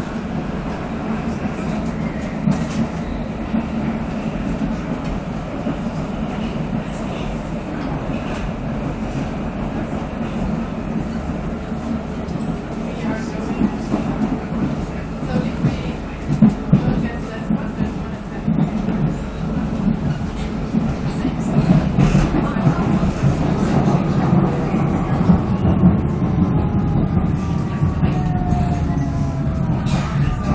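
Vienna U-Bahn Type V metro train running through a tunnel, heard from inside the car as a steady low rumble of wheels on rail. In the last several seconds it grows louder and a whine falls in pitch as the train brakes into a station.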